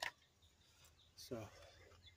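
Near silence: faint outdoor background with faint bird chirps, and one short sharp click at the very start.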